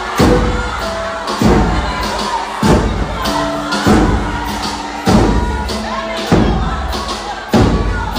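A group of tall hand drums beaten together in a slow march, one heavy beat about every second and a quarter. The beats sit over music, with a crowd cheering.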